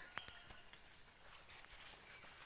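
An insect, such as a cricket, singing one steady high-pitched note without a break, with a single soft tick near the start.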